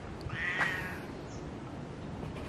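A domestic cat meows once, a short high-pitched call about half a second in.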